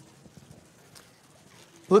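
A quiet room with a few faint, soft taps, with a man's voice starting right at the end.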